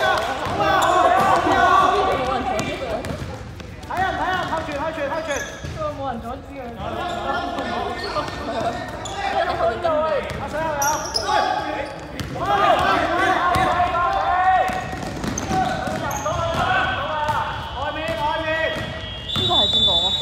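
Basketball being dribbled and bounced on a sports-hall floor during play, with players' shouts echoing in the large hall. A high steady tone sounds near the end.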